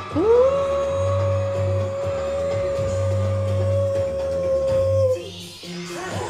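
Live pop performance: a female singer slides up into one long high note and holds it steadily for about five seconds over low pulsing backing music, releasing it about five seconds in.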